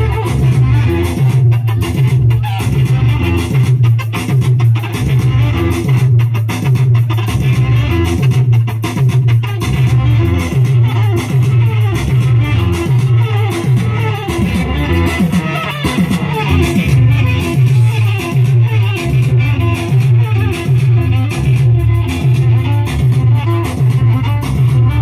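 Live Tigrigna band music played loud through a PA, with an electric guitar over a steady, pulsing bass beat.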